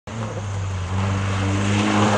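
Rally car engine running at a steady low note as the car comes down a forest stage, growing a little louder about a second in.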